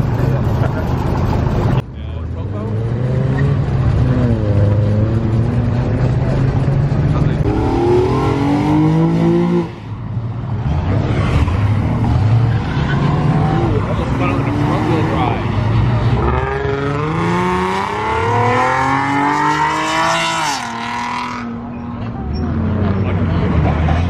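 Modified cars accelerating hard past one after another, their engines revving in rising and falling pitch, with a long rising rev near the end. The sound changes abruptly twice, at about two seconds and ten seconds in.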